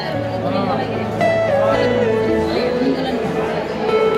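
Music: a melody that slides between held notes over a sustained low drone, the drone note changing near the start and again about halfway through.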